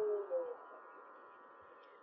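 Low-pitched howl of a large male gray wolf coming to its end. The long held note breaks off about a quarter second in, followed by a brief final note that dips in pitch.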